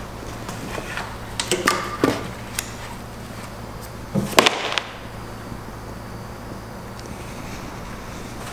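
Scattered knocks and rattles of the plastic fuel-pump cover, lines and wiring harness being handled on an aluminium fuel tank, with a louder clatter about halfway through, over a steady low hum.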